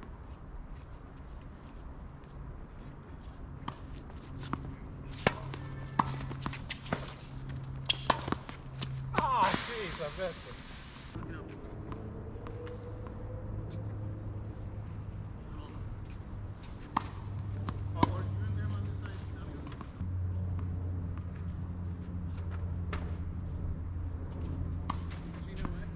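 Tennis balls struck by rackets and bouncing on a hard court: scattered sharp pops, a quick run of them about five to nine seconds in and a few more near eighteen seconds, over a low steady hum. A short burst of loud hiss comes about ten seconds in.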